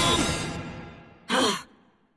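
A music number ends, its last sound dying away over about a second. Then comes a single short vocal sigh, falling in pitch.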